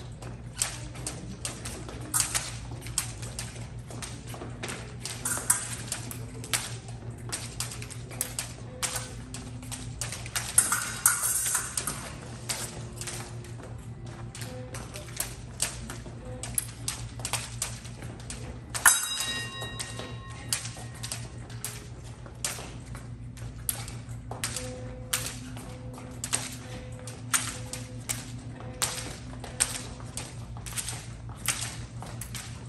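Epee fencers' footwork on a metal piste: quick irregular taps and shuffles, with light blade clicks, over a steady low hum. About two-thirds of the way through, a sharp hit is followed by a short electronic tone, the scoring machine registering a touch.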